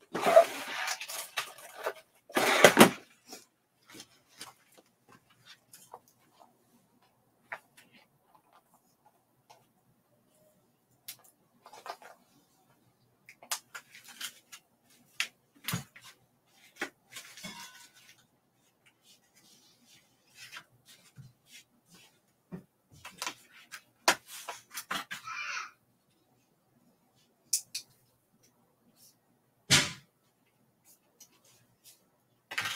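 Scattered clicks, taps and rustles of tools and supplies being handled on a craft table, with louder rustling in the first three seconds and another sharp click near the end.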